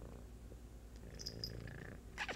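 Tabby cat purring steadily right at the microphone, a low even pulsing rumble, as it rubs its face against a person's face in contentment.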